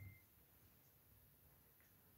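Near silence: room tone. A thin, steady high electronic tone carries over for a moment at the very start and then cuts off.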